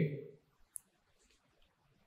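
A pause in a man's speech: his voice trails off, then quiet room tone with a single faint click just under a second in.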